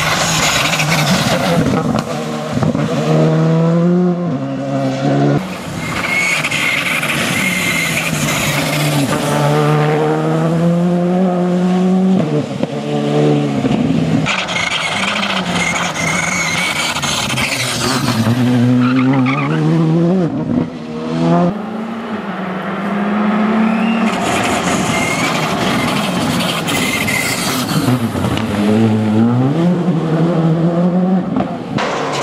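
Škoda Fabia R5 rally car's turbocharged four-cylinder engine at full throttle, its pitch climbing and dropping sharply again and again through quick gear changes, over several passes of the car.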